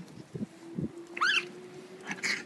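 Raccoons squabbling in a crowd: a short, high-pitched squeal about a second in, after a couple of low thuds.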